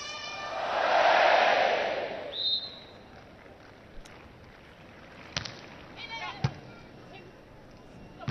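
A swell of crowd noise rises and fades over the first two seconds, then a short, high referee's whistle sounds. A few seconds later the beach volleyball is struck twice, sharp hits about a second apart as the serve goes over and is passed, with a short call from a player.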